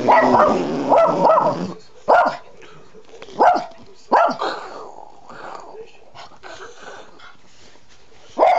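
Small Yorkshire terrier barking: a dense burst of barking at the start, then three sharp single barks over the next few seconds, tailing off into quieter sounds in the second half.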